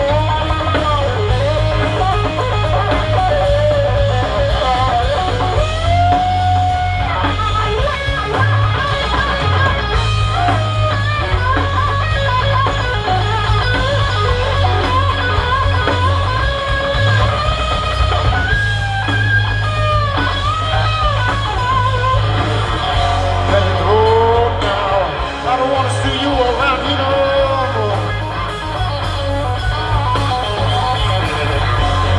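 Live rock band of electric guitar, bass guitar and drum kit playing an instrumental passage, the electric guitar playing a lead line full of bent, sliding notes over a heavy bass line.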